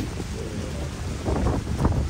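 Wind buffeting the microphone, a heavy low rumble, with a few soft rustles or taps in the second half.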